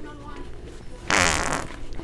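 A single loud fart about a second in, lasting about half a second, over faint store background.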